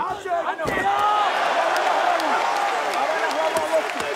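A single thud less than a second in as a fighter is slammed to the canvas in a takedown, then an arena crowd cheering and shouting, swelling about a second in and holding.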